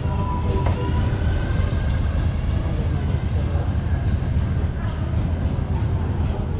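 Motorcycle engines running among the gathered bikes: a dense, steady low rumble with faint voices under it.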